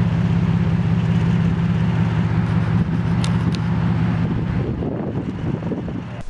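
Car engine idling: a steady low hum that thins out and drops a little near the end.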